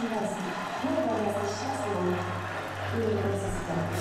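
Female voice speaking into a stage microphone, played back from the concert video, over a steady low tone from the backing music that comes in about a second in.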